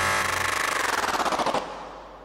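Electronic sound in a live new-music piece: a fast stuttering, rattling pulse that slides down in pitch and fades away over about a second and a half.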